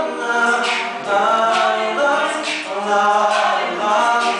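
All-male a cappella group singing in close harmony, a lead voice over sustained backing voices, with no instruments.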